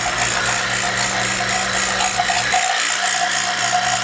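An electric motor-driven machine running steadily with a hum and a rattle.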